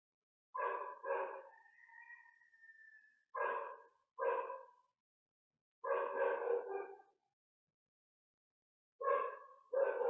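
A dog barking in short, separate barks, about seven in ten seconds with silent gaps between them.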